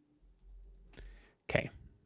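A few faint computer keyboard keystrokes, with a distinct click about a second in, as the terminal is cleared.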